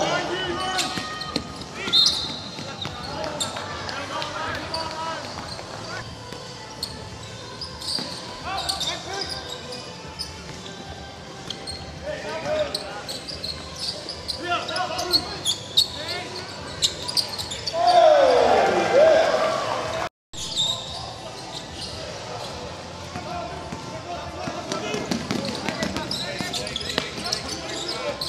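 Live basketball game sound in an indoor stadium: a ball bouncing on a hardwood court amid players' and spectators' voices. About 18 seconds in, a loud sound slides down in pitch, then the sound drops out for a moment.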